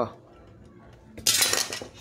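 Sheet-metal case of a digital TV receiver scraping and rattling as its circuit board is pulled free. There is a short, loud scraping noise just over a second in.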